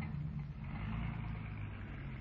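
Sound effect of a car engine running steadily with a low hum, in an old radio recording with background hiss.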